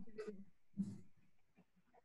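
Faint, brief voice sounds over a video-call connection: a short breathy syllable or breath about a quarter of a second in and another just before a second in, then near silence.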